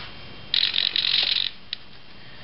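RC servo whirring for about a second as it drives the aileron to its up position, followed by a short click.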